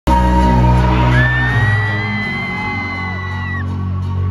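Loud synth music with held low notes playing over a concert sound system as a song begins. A crowd cheers, and one long, high scream rises slightly and then breaks off near the end.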